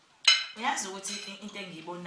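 A metal spoon clinks once against a dinner plate, a sharp click with a short ring, then a woman starts talking.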